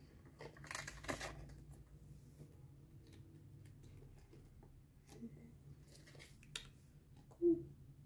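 Flashcards and their paper and plastic wrapping rustling and crinkling as a new pack is opened and handled, in irregular bursts, the busiest about a second in, with a few light clicks. A short, louder sound comes near the end.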